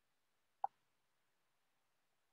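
A single short pop, a little over half a second in, against near silence.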